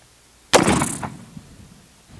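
A single rifle shot from a Springfield Trapdoor Model 1884 chambered in .45-70, about half a second in. The sharp report fades away over the following second.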